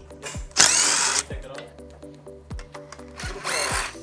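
DeWalt 20V cordless drill spinning a socket on engine bolts, in two short bursts: one about half a second in and one near the end. Background music with a steady beat runs underneath.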